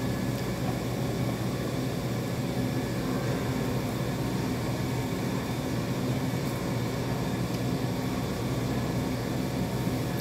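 A steady, unchanging low mechanical hum, with no starts or stops.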